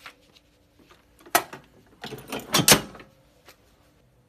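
Manual clamshell heat press being pulled shut. There is a sharp click a little over a second in, then a louder run of clunks from about two to three seconds in as the upper platen comes down and locks.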